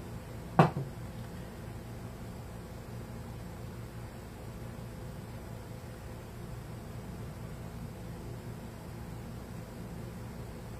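A single sharp click about half a second in, then only steady low room noise with a faint hum. The vapour rising from the decomposing hydrogen peroxide makes no distinct sound.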